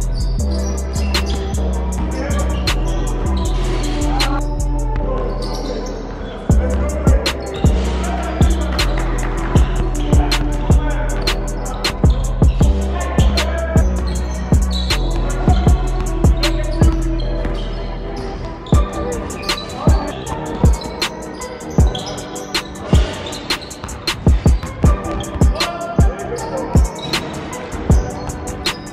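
A basketball bouncing on a hardwood gym floor during a game, as repeated sharp thuds, mixed with background music that has a steady bass line. The bounces come thicker and louder in the last third.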